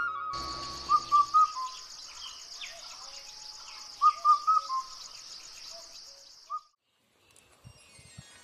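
Birds calling: a short run of three chirps about a second in and four more about four seconds in, over a steady, high, fast-pulsing trill. All of it cuts off suddenly near the end.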